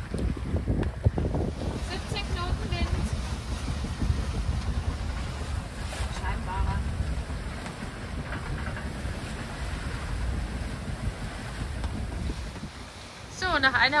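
Wind rumbling steadily on the microphone and water rushing along the hull of a sailing yacht under way in a fresh breeze of about 17 knots.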